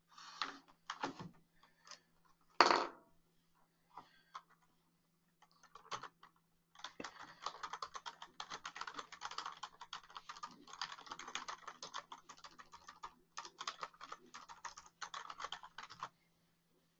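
Computer keyboard typing: a few scattered key clicks and one sharp knock early on, then a rapid, continuous run of key clicks from about seven seconds in. A faint steady low hum runs underneath.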